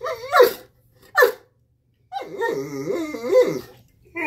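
Cane Corso dogs vocalizing: short sharp barks in the first second and a half, then a longer wavering growl lasting about a second and a half.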